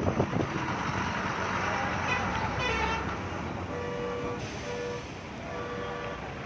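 A vehicle horn beeps three times in short honks over a steady rush of traffic and wind noise.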